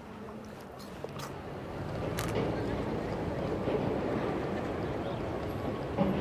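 Outdoor city ambience: a steady murmur of distant voices and traffic, growing louder about two seconds in.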